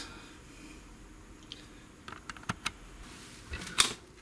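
A few light, sharp clicks and taps from close hand work on a small circuit board, scattered over a quiet background, with the loudest click near the end.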